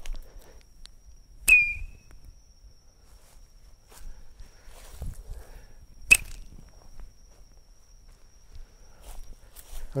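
Two sharp snaps about four and a half seconds apart, each with a brief high squeak, as a Rocket Copters slingshot launcher's rubber band is released to shoot the toy copters into the air. A few fainter clicks come in between.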